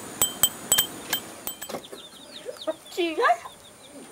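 A bicycle bell rung over and over, about eight quick ringing dings in the first second and a half. Then chicks peep in short falling notes and a hen clucks.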